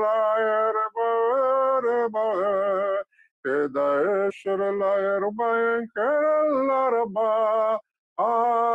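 A man singing prayer in long, held notes that waver in pitch, chant-like and without recognisable words, pausing briefly for breath between phrases.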